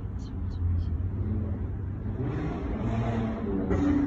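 A low, steady motor hum, with a louder rushing swell between about two and three and a half seconds in.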